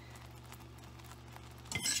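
Fudge syrup of sugar, butter and evaporated milk bubbling softly in a stainless saucepan as it nears a full boil, with a faint steady hum underneath.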